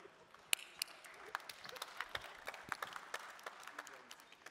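Applause: a scattering of hand claps that starts about half a second in and keeps going.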